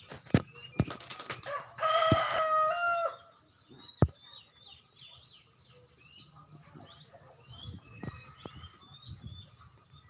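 A rooster crowing once, one loud call of about a second and a half with a stepped pitch, between scattered sharp knocks. Afterwards small birds chirp repeatedly.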